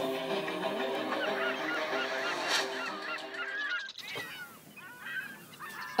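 A flock of birds calling, many short squawks overlapping. About four seconds in the sound changes abruptly, and fewer, quieter calls follow.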